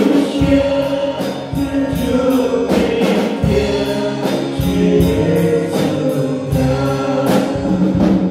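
Male vocal group singing a gospel hymn in harmony into microphones, with held notes over an accompaniment that has a steady beat and bass line.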